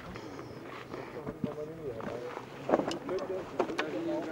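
Indistinct voices of people talking, with a few sharp clicks in the second half.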